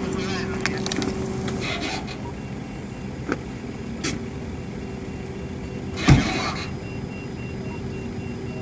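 Flatbed tow truck running steadily as a damaged car is loaded onto its ramps, with voices in the first seconds and small clicks. About six seconds in comes one loud bang with a short ring.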